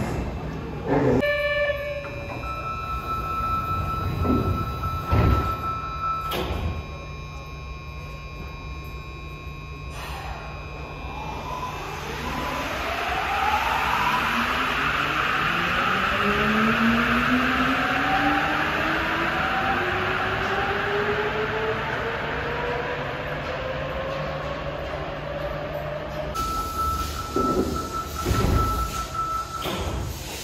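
Sapporo Subway Tozai Line rubber-tyred train closing its doors and pulling out. A couple of thumps and a steady electronic tone come first. From about twelve seconds in, the motors' inverter whine rises in several tones at once over a loud running hiss as the train speeds up. Near the end the steady tone sounds again.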